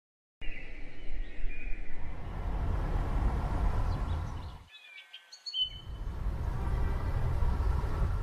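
Birds chirping over a steady low rushing background noise. About halfway through, the noise cuts out for about a second, leaving only the chirps, then returns.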